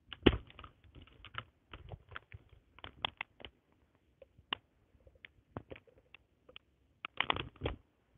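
Handling noise: irregular clicks and rustles as a pair of headphones and their cable are picked up and fiddled with on a blanket. A sharp click comes just after the start, and a denser burst of rustling comes near the end.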